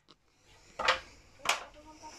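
Two short scuffing sounds, less than a second apart, after a moment of near silence: handling noise from a phone camera being moved around.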